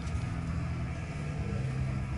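A steady low hum with faint even background noise.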